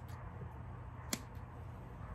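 Quiet room tone with a single sharp click about a second in, as a piece is trimmed off a thick, tough pork-rind frog jig trailer.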